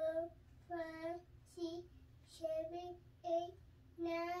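A three-year-old child's voice counting aloud, one drawn-out number about every 0.8 seconds, each held on a fairly steady pitch.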